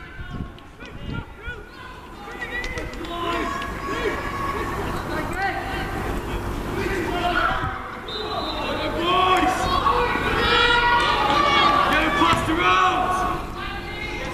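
Many voices shouting and calling out together at a football kickoff, overlapping rising-and-falling calls that grow louder and busier over the second half.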